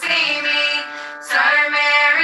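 Recorded girls' voices singing a Coptic Orthodox hymn in long held lines. The singing softens briefly in the middle and comes back strongly about a second and a half in.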